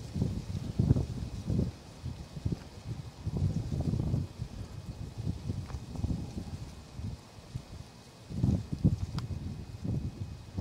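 Wind buffeting the microphone in irregular gusts, a low rumble that rises and falls, with a single short click about nine seconds in.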